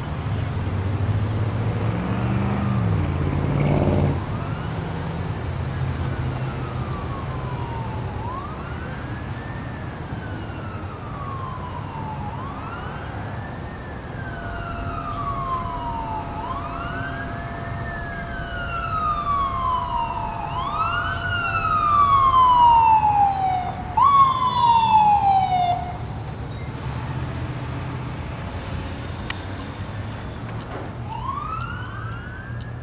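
Emergency-vehicle siren wailing, each sweep a quick rise and a slower fall, about one every four seconds. It grows louder and cuts off suddenly a little before the end, then starts again at the very end. A low rumble runs under the first four seconds.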